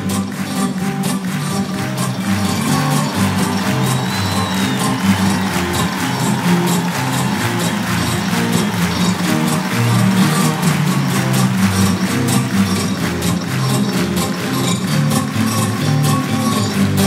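Instrumental band introduction to a chanson song, with a stepping bass line under a steady beat and no singing yet.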